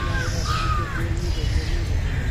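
An animal calling twice, two short harsh cries each with an arched pitch, over a steady low rumble.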